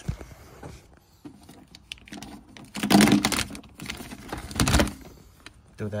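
Handling noise: a burst of rattling and clicking about three seconds in and a shorter one near five seconds, as the loose wiring and trim in the opened door are moved about.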